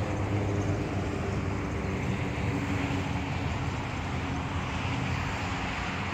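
Steady outdoor background noise with a low engine-like hum that drifts slightly in pitch, like a vehicle or traffic running nearby.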